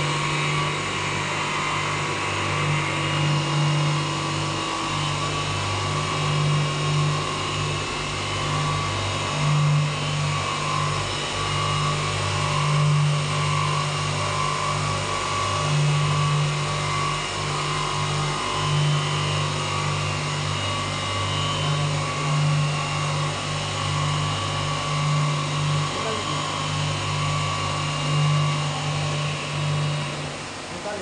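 Three-motor horizontal glass beveling machine running steadily: a low electric motor hum that swells slightly, with the wash of coolant water over the wheels and brushes.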